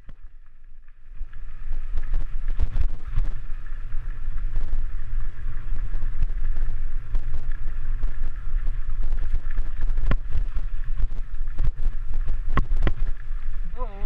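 Wind buffeting an action camera's microphone as a mountain bike rolls over a dirt trail, a steady low rumble with scattered sharp clicks. It fades in about a second in.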